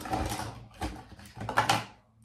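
Someone rummaging through a container of hair tools: objects clattering and rustling in uneven bursts, with the loudest knock near the end.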